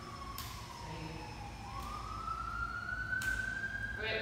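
A distant siren wailing: its pitch slides slowly down, then climbs again through the second half.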